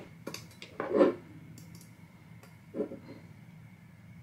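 Camera cage being slid onto and fitted around a Sony a7c mirrorless camera body: a few light hard clicks and knocks, the loudest about a second in and another near the three-second mark.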